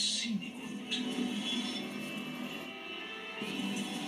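Music from a car commercial playing through a television's speaker, with a whoosh at the start and another about a second in.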